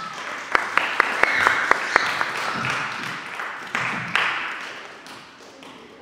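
Audience applauding, with sharp hand claps close by at about four a second in the first two seconds. The applause swells at the start and dies away after about five seconds.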